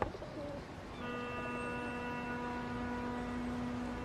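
Film soundtrack: a short warbling, bird-like chirp with a sharp knock at the start, then from about a second in a steady held tone with many overtones, like a hum.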